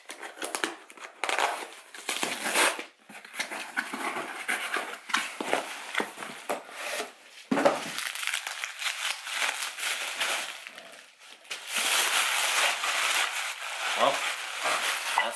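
Wrapping on a candle being crinkled and pulled at in a drawn-out struggle to get it open: irregular rustling, which turns denser and more continuous near the end.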